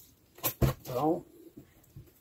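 Two sharp clicks from the plastic blister-card packaging being handled and turned, followed by a short spoken sound from a man.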